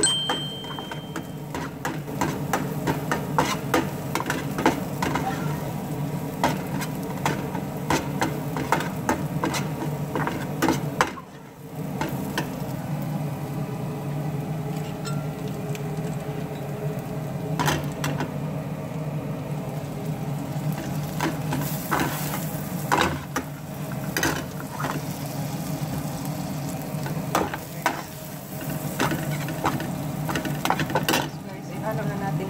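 Minced garlic frying in a metal pan, a slotted metal spatula scraping and tapping against the pan as it is stirred, with frequent sharp clicks over a steady low hum.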